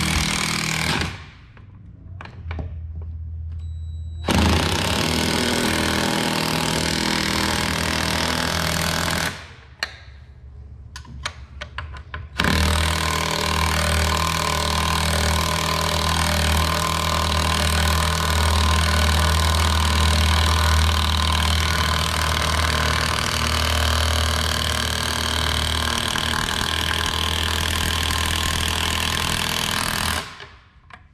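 Cordless impact driver running bolts into a tractor seat pan in long bursts. There is a short burst at the start, a run of about five seconds from about four seconds in, a few clicks in a gap, then one long steady run from about twelve seconds in.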